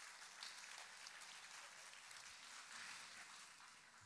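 Faint audience applause, a thin patter of many hands clapping that dies away near the end.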